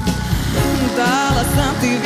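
Live band music in a jazz-fusion pop style, with a woman's voice singing a wavering, held note about a second in.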